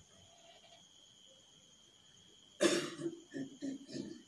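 A person coughing: one hard cough about two-thirds of the way in, followed by a few shorter coughs.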